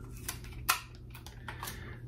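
A few faint clicks and rustles from a roll of clear tape being handled as a piece is picked free to stick onto the comb, over a low steady hum.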